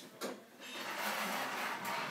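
Handling noise as a clothes iron is set up: a short click, then about a second and a half of steady hiss-like scraping.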